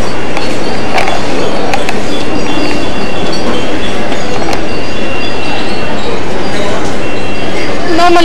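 Steady, loud shopping-mall hubbub: indistinct voices under an even wash of noise, with a few sharp clicks about one, two and four and a half seconds in.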